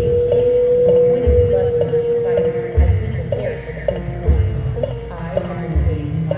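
Marching band show music: a steady held note lasting about two and a half seconds, then shorter notes, over a slow low beat that comes about every one and a half seconds.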